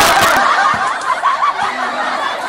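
Loud, high-pitched snickering laughter.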